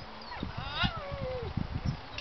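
A dog gripping a helper's padded bite sleeve gives one whine that falls steeply in pitch, starting about half a second in and lasting about a second.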